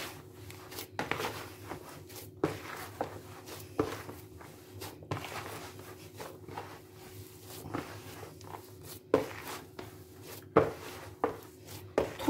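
Hands kneading a moist fine-bulgur köfte dough in a plastic bowl: soft, uneven squishing and rustling, broken by a few sharper knocks. A faint steady hum runs underneath.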